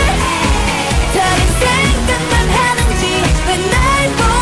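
K-pop song with female voices singing over a steady electronic dance beat and bass.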